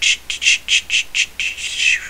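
Computer mouse scroll wheel clicking in a quick run, about six clicks a second, with a short smear of sound near the end.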